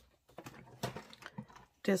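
A run of light, irregular clicks and taps as craft tools and paper are handled on a tabletop, with a voice coming in near the end.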